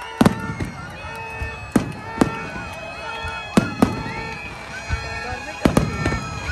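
Aerial fireworks shells bursting overhead: about ten sharp bangs at irregular intervals, several in quick pairs, with a cluster of three near the end. Crowd voices and music run underneath.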